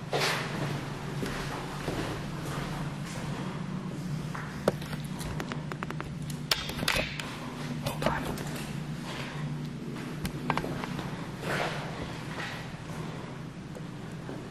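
Footsteps and scattered sharp clicks and knocks on a hard tiled floor, over a steady low hum, with a few short hissy rushes.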